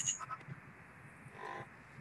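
Faint, brief fragments of a garbled, robotic-sounding voice coming through a breaking-up Skype connection, with a click at the start.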